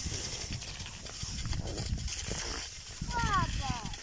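Crunching and scraping of movement over snow, footsteps and skis, under a rough low rumble of wind and handling on the phone microphone. A short falling vocal note comes about three seconds in.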